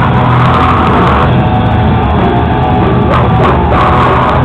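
A live heavy rock band playing loudly.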